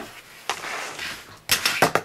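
Small plastic ball-and-glove catch toy: the launcher flicks a light plastic ball up and it clatters back into the plastic glove. There is one sharp click about half a second in, then a quick run of plastic clacks near the end.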